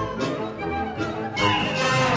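Symphonic wind ensemble playing sustained chords in woodwinds and brass over low bass notes, swelling louder about one and a half seconds in.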